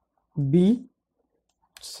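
Speech only: a lecturer's voice saying two single letters, with silent gaps between them.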